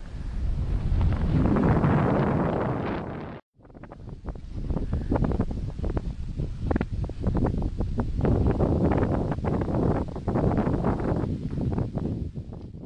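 Wind buffeting the camera's microphone in uneven gusts. The sound cuts out completely for a moment about three and a half seconds in, then the buffeting resumes.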